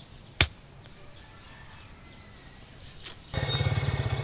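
Two sharp clicks over faint outdoor background, then about three seconds in a motorcycle engine cuts in, running with a steady low pulse as the bike pulls up.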